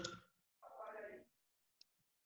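Near silence on an online-class recording: a faint, distant voice for about half a second, then a single short click near the end, the kind a mouse or key makes while an equation is being typed.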